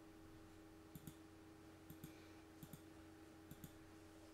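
Faint computer mouse button clicks: four quick double clicks, a little under a second apart, over a low steady hum.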